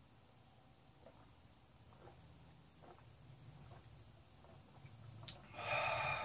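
Quiet room with a few faint small sounds as beer is sipped from glasses, then, near the end, a loud breathy exhale after drinking.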